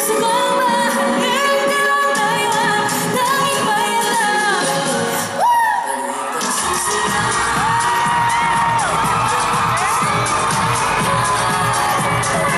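Live pop music over a PA: a female voice singing a melody over a backing track. About five and a half seconds in, a falling sweep effect hits with a brief jump in loudness, then a heavy bass beat comes in.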